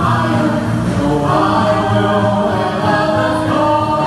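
Choir singing, many voices holding long chords together, with a new phrase starting about a second in.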